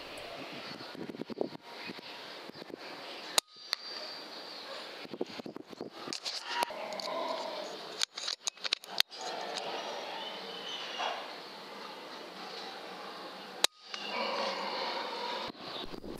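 Two sharp cracks of a .22 FX Impact M3 PCP air rifle firing, about ten seconds apart, over faint outdoor background. The sound cuts out briefly several times.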